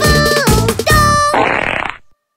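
Closing bars of a children's song played on bright synth melody and bass, with its last notes about a second in. A short noisy comic sound effect lasts about half a second, then the music cuts off into silence.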